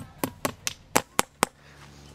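A hammer tapping a fence staple into a chestnut-wood post to fix wire mesh: seven quick, sharp strikes at about four a second, stopping about a second and a half in.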